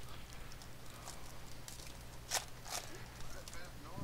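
Trading cards handled and slid against one another, giving soft scattered clicks and rustles with two sharper ticks a little past halfway, over a steady electrical hum.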